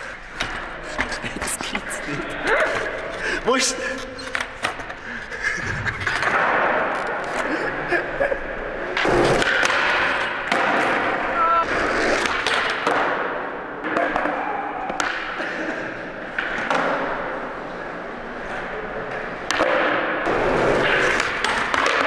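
Skateboard sounds on a concrete floor: wheels rolling, with many sharp knocks from tail pops and landings, among voices that cannot be made out.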